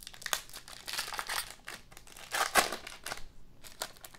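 Foil wrapper of a Donruss Optic trading-card pack crinkling and tearing as hands pull it open, in irregular bursts, loudest about two and a half seconds in.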